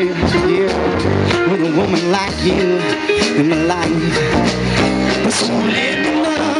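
A jam band playing guitar-led rock music: guitar lines over bass and drums.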